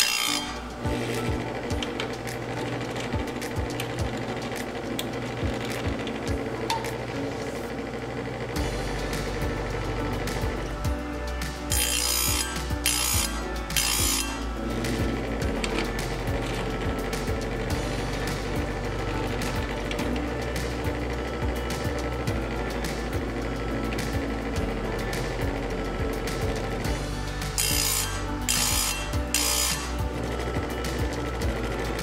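Electric bench chainsaw sharpener running, its grinding stone pushed down onto saw-chain teeth in short grinding strokes: a few at the very start, three about twelve seconds in and a few more near the end. Between the strokes come clicks of the chain being advanced to the next tooth, over background music.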